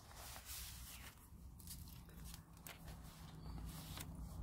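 Faint rustling and soft scuffs of paper as the pages of a handmade paper journal and its tags are handled and a page is turned, over a faint low hum.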